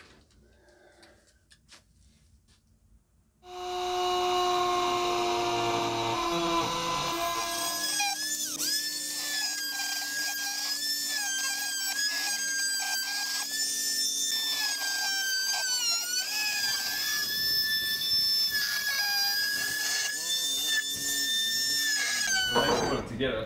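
A high-speed power tool cleaning up the edges of a freshly moulded fibreglass tank. It starts suddenly about three seconds in, then runs as a steady high whine whose pitch dips briefly now and then as it bites into the fibreglass.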